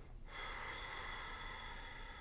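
A woman breathing slowly and audibly close to a microphone. After a brief pause at the start, one long breath begins and fades away gradually.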